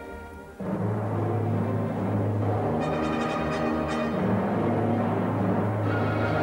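Symphony orchestra playing. About half a second in, the full orchestra comes in suddenly and much louder, with timpani and brass over a steady low note, and holds there.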